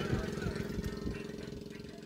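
A small engine running steadily with a low, even hum, gradually fading.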